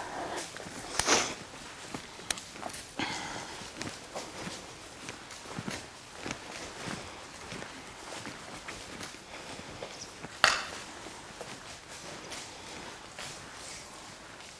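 Footsteps of a horse and a person walking through deep straw bedding: soft, irregular rustling and crunching of the straw, with two louder sharp sounds, one about a second in and one near the end.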